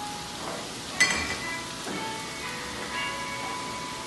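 Stir-fried vegetables sizzling in a wok over a gas burner, under soft background music with held notes. A single sharp, ringing clink sounds about a second in.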